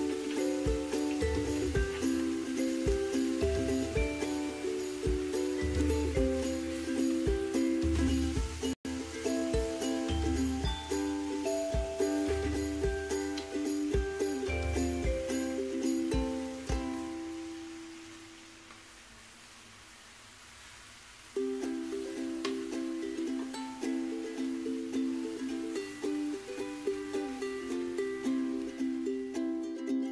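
Background music with a steady beat; it fades out about two-thirds of the way through, leaves a few seconds of near silence, then starts again abruptly.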